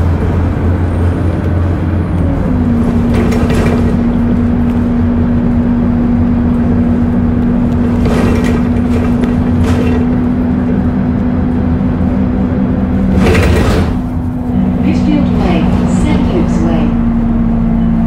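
Go-Ahead London single-deck bus SE214 running: a steady engine drone with a whine whose pitch steps about two seconds in and again near the end. A few brief bursts of noise come through along the way.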